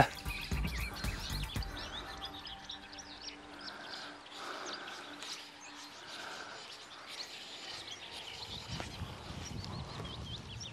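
Small birds singing and chirping, many short quick calls, with faint background music underneath.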